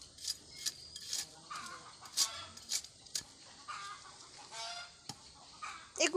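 A small metal blade scraping and jabbing into loose soil around a buried tuber, in short sharp strokes about two a second, with fowl clucking now and then in the background.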